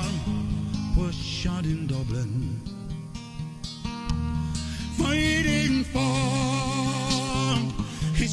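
A man singing a folk ballad over instrumental accompaniment, with a short gap in the voice around the middle, then a long held note with vibrato from about five seconds in until near the end.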